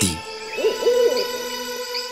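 Owl hooting: a short run of hoots in the first second or so, over steady sustained background tones.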